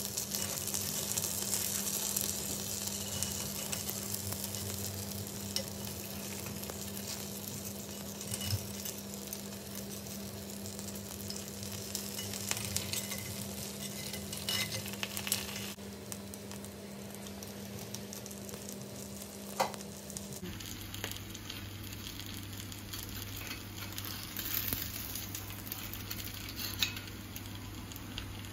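Egg and cheese paniyaram sizzling in hot oil in a cast-iron paniyaram pan, with occasional clicks and scrapes of a metal spoon turning them in the wells. A steady low hum runs underneath.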